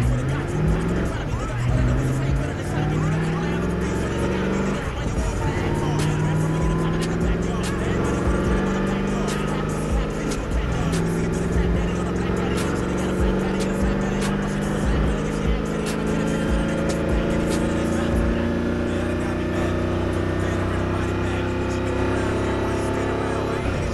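Sports car engine accelerating from a slow roll, heard from inside the cabin. Its pitch climbs and drops back at each of several upshifts, then rises slowly in a long, higher gear.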